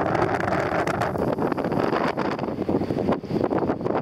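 Wind buffeting the microphone in gusts, over the steady hum of a boat's engine.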